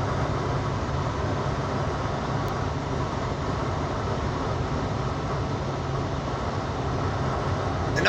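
Steady engine and road noise inside the cab of a moving vehicle: an even low hum under a constant rush.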